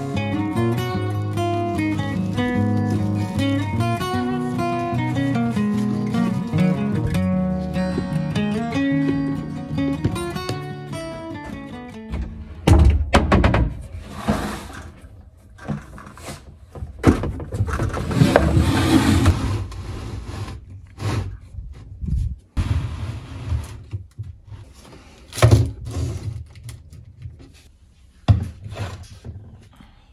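Acoustic guitar background music for the first twelve seconds or so, then the music stops and plastic spray bottles and containers knock and rustle as they are handled and set down in a plastic basket, in a string of separate knocks with a couple of longer rustles.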